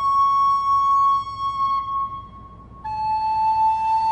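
Wooden recorder playing a slow solo melody: one long held high note that tapers away, a short pause, then a lower note held near the end.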